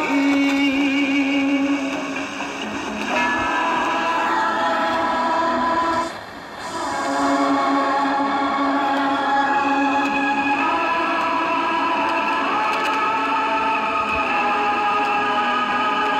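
Music with singing playing from the small built-in speaker of a Philips AL235 two-band transistor radio, with little bass. The sound drops away briefly about six seconds in, then comes back.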